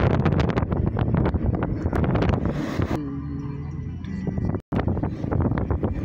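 Car driving along a street, heard from inside the cabin: steady engine and road noise with a rapid run of clicks and wind buffeting the microphone in the first half, calmer after that. The sound cuts out for an instant about three-quarters of the way through.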